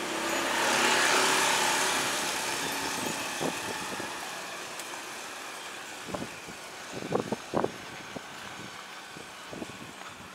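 A motor vehicle passing close by on a narrow street, its engine and tyre noise swelling in the first second or so and then fading away over several seconds. A few short knocks come later, near the end.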